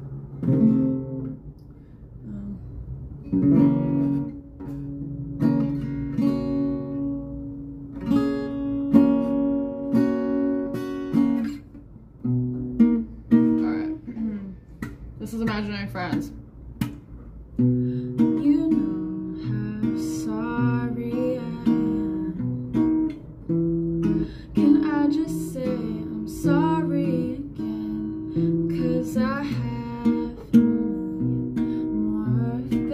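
Acoustic guitar played with sustained chords, joined from about halfway by a woman's voice singing along.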